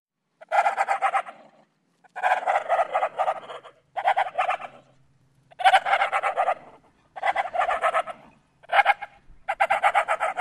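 About seven short bursts of rapid, stuttering fowl-like calls, each under two seconds, separated by brief silences.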